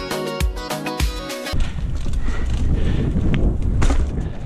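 Background music with a steady beat cuts off about a second and a half in. It gives way to wind rumbling on the camera microphone and the rattle of a Giant Talon mountain bike rolling over a dirt trail, with a couple of sharp knocks near the end.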